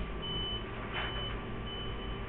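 A high-pitched electronic beep repeating evenly, three beeps in two seconds, over a constant background hiss and low hum.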